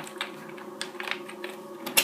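Typing on a computer keyboard: about half a dozen irregularly spaced key clicks as a short command is entered, the sharpest near the end.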